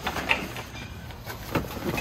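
Handling noise from a vehicle roof-top awning: its canvas rustling as it is unrolled and moved, with a few sharp knocks or clicks from its legs and fittings.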